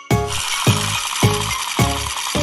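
Children's music with a steady beat, about two beats a second, under a continuous high rattling hiss.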